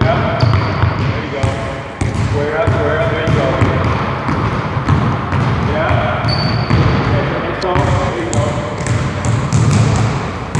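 Basketball being dribbled on a hardwood gym floor, a run of sharp, irregular bounces, with voices talking in the background and a few short high squeaks.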